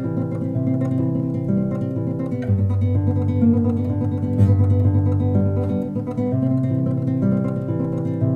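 Nylon-string classical guitar played fingerstyle in a fast classical tremolo: a single treble note rapidly repeated by the ring, middle and index fingers over a bass line picked by the thumb. The bass steps down to lower notes a little over two seconds in and returns near the end.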